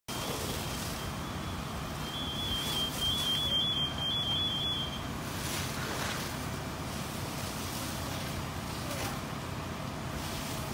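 Steady low rumble and rushing noise at a working house fire, with a vehicle engine running and hose streams flowing. A high electronic beeping, alternating between two close pitches, sounds through the first half and stops about five seconds in.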